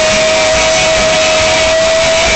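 Rock band playing live and loud on electric guitars and drums, with one long note held steady over the dense band sound.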